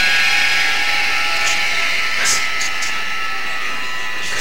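Gymnasium audience cheering and applauding, a loud steady noise with a few short shrill cries or whistles in the middle.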